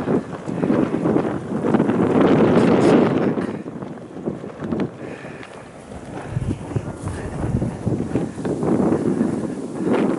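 Wind buffeting the camera microphone in gusts, strongest in the first few seconds, easing off in the middle and picking up again.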